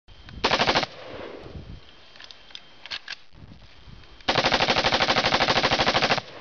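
Automatic gunfire: a short burst of rapid shots about half a second in, two single shots near the three-second mark, then a longer burst at about fourteen shots a second over the last two seconds.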